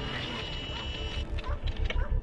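Sci-fi sound effects for a hovering drone: a steady high electronic whine over a low rumble, cutting out a little past halfway and followed by a quick run of mechanical clicks and chirps.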